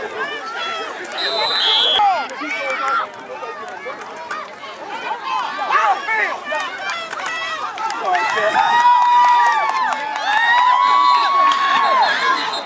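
Sideline spectators at a youth football game shouting and cheering over one another during a play, building to long, drawn-out yells in the last few seconds. A short, high, steady tone like a whistle sounds about a second in and again near the end.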